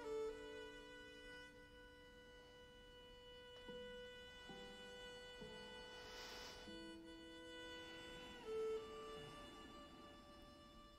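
Quiet, slow instrumental music for a Tai Chi for Arthritis routine: long held notes that change pitch every second or so, with a louder note near the start and another near the end.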